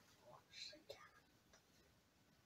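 Near silence with faint whispering in the first second, and one soft click.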